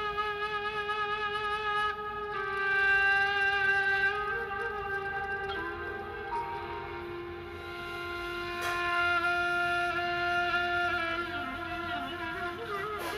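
Slow instrumental music led by a flute-like wind instrument holding long notes with vibrato over a sustained lower note, moving to a new note every few seconds.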